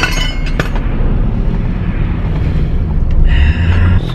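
Steady low road and engine rumble inside a moving pickup truck's cabin, with a few sharp clicks from handling the camera near the start and a sigh near the end.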